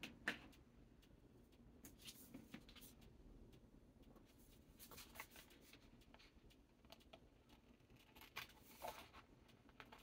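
Faint snipping of scissors cutting through a sheet of vinyl on its paper backing, with light handling of the sheet: scattered soft clicks and crinkles.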